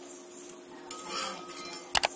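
A metal slotted spatula clinking and scraping against a cast-iron kadai as frying vadai are turned in hot oil. A sharp double click near the end is the loudest sound.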